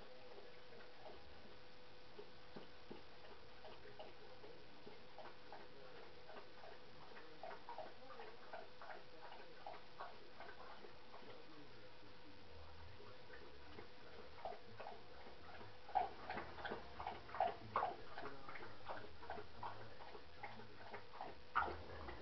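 A dog's claws clicking on a hard floor as it walks about, faint and sparse at first, then louder and quicker as it comes closer, with a few sharper clicks near the end. A faint steady hum runs underneath.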